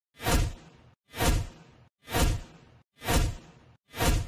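Countdown-intro sound effect: a deep whoosh about once a second, four in a row. Each one swells quickly to a peak and fades away.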